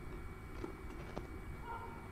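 A few faint, short knocks about a second in, over a steady low outdoor rumble.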